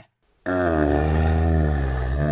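A long, drawn-out groan of exasperation in a man's voice, starting about half a second in and held steady.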